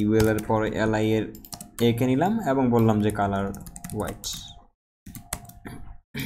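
Typing on a computer keyboard: a run of separate keystroke clicks that stand alone in the last two seconds. A man's voice talks over the first half.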